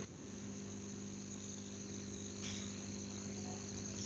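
Quiet room tone: a steady low hum with a faint, steady high-pitched whine over it.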